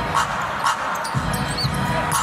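Basketball dribbled on a hardwood court, bouncing about twice a second, with a brief squeak of a shoe on the floor about a second and a half in.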